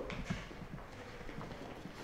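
Faint, irregular footsteps of people walking slowly across a stage floor.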